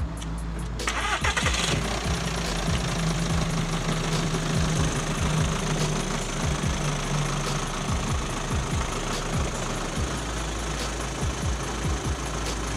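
Audi A3 hatchback's engine starting about a second in, then running steadily as the car is driven off.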